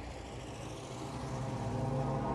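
A car engine running: a low, steady hum that grows gradually louder.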